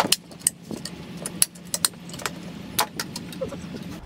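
Plastic top of a 12 V Power Wheels gray top sealed lead-acid battery cracking and snapping as it is broken off by hand: an irregular run of sharp cracks and clicks.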